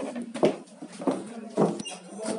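Handling noise from a handheld phone's microphone being jostled: several knocks and rubs about half a second apart over a steady low hum.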